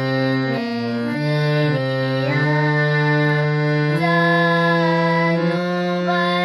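A girl singing to her own harmonium accompaniment. The reed notes are held and change pitch every second or so.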